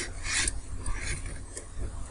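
Handling noise: a short scrape in the first half-second, then light rubbing and a few faint ticks as watches are moved about by hand.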